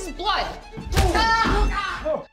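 Voices exclaiming over music, with a single heavy thud about halfway through.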